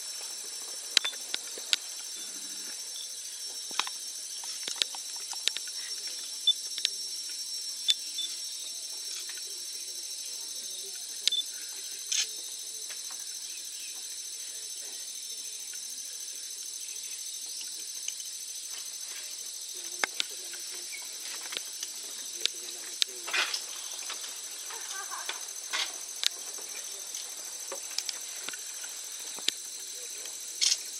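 Steady high-pitched insect chorus of the rainforest, with scattered sharp clicks and taps throughout.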